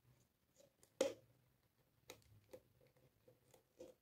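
Faint handling sounds of a rubber balloon being stretched over the rim of a clear plastic jar: one sharper click about a second in, then a scatter of small soft taps and rubs.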